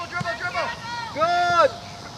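Children shouting and calling out during play, with one long, high, held call a little past the middle.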